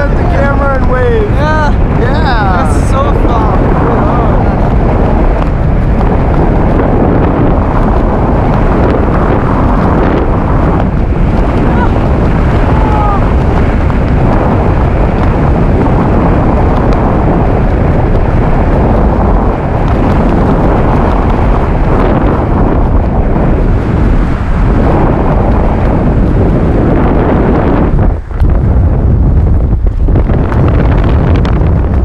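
Loud, steady wind rushing over the camera microphone during a tandem parachute descent under an open canopy, with whooping shouts in the first few seconds. The wind noise drops out briefly near the end.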